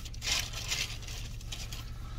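A shopping bag rustling and crinkling in uneven bursts as the next beer is pulled out of it, over a steady low hum.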